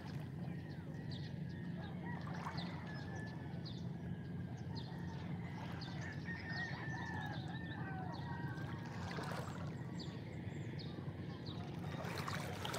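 Small waves washing and trickling over rounded beach stones, with a rooster crowing several times in drawn-out, wavering calls from about two seconds in to about nine seconds in.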